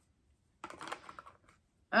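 Light clicking and rustling of a small plastic makeup-sponge container being handled as its insert is pushed back into place, lasting under a second.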